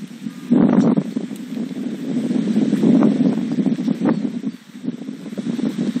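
Steady rushing noise with scattered faint clicks, heard over a two-way radio channel between calls.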